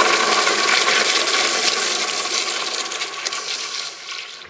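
Kohler Dexter urinal flushing: loud rushing water that surges at the start, runs strong for about three seconds, then eases off near the end.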